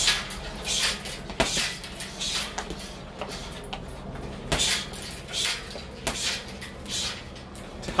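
Gloved uppercuts and knee strikes landing on a hanging teardrop-shaped heavy bag: a string of irregular sharp thuds and smacks.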